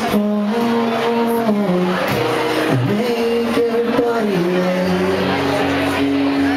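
Live acoustic guitar strumming with a man singing long held notes that slide between pitches.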